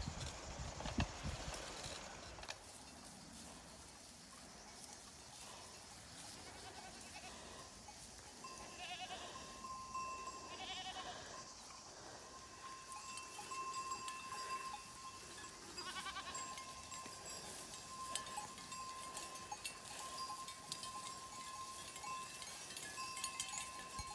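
A herd of goats with faint bells ringing steadily, and goats bleating a few times, around nine, eleven and sixteen seconds in.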